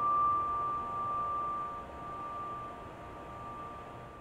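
Solo piano's closing chord left to ring at the end of a piece, its high top note sustaining over fainter lower notes and slowly fading away.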